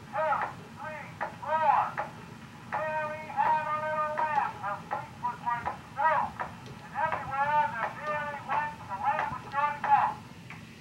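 An 1878 Bergmann exhibition tinfoil phonograph plays back a man's voice from the tinfoil through its horn. The speech comes out thin and tinny, with no low tones.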